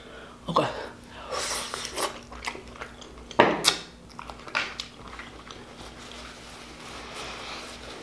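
Close-up mukbang eating sounds of braised pig feet: wet chewing and mouth smacking as the soft, fall-off-the-bone meat is eaten with the fingers, with a few louder sudden smacks about half a second and three and a half seconds in.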